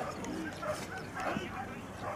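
Greyhounds yelping and whining in short, high calls as they are released to course, with people's voices around them.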